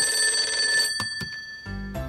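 Telephone bell ringing in a rapid trill, dying away about a second and a half in, with a couple of clicks as the receiver is picked up. Low background music notes come in near the end.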